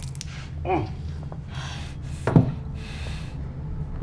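A man's pained vocal sounds: a short grunt near the start, hissing breaths, and a sharp cry that drops steeply in pitch a little past halfway, from the sting of liquor poured on a cut, bleeding hand.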